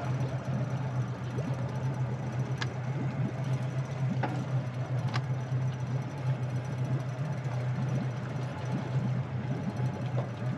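Outboard engine on an Atlantic 75 RIB idling with a steady low hum. A few light knocks come about two and a half, four and five seconds in.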